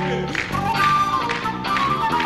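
Live rock band playing, with a flute carrying the melody over bass guitar, electric guitar and drums, the drums keeping a steady beat.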